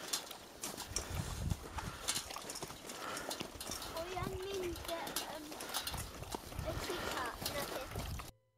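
Sled huskies drinking from metal bowls: an irregular patter of lapping and small clicks against the bowls.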